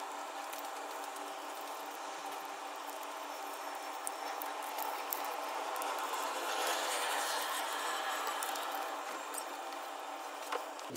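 Paper being folded and creased by hand, with soft rustling and sliding over a steady background hiss. The rustling swells for a couple of seconds past the middle as the folds are pressed down.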